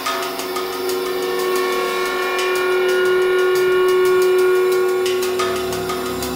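Background score: a sustained, tense synth chord that swells to a peak about four seconds in, then eases off.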